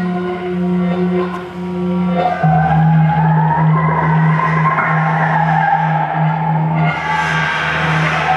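Improvised experimental noise music: a steady low drone, joined about two seconds in by a rough, scraping tone that rises in pitch and holds, with a brighter hiss added near the end.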